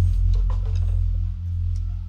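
A low bass note from a live dangdut band held and slowly fading as the song's last note rings out through the PA, with a few faint clicks over it.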